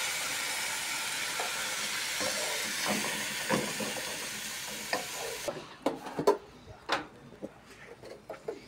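Onion, green chile and diced tomato sizzling in a hot frying pan as a wooden spoon stirs them. The steady sizzle cuts off suddenly about five and a half seconds in, leaving the spoon knocking and scraping against the pan.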